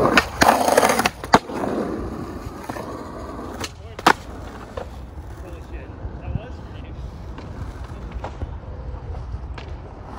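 Skateboard wheels rolling on concrete, with a loud clack of the board about a second in; the rolling fades away, then two sharp clacks of the board come close together about four seconds in.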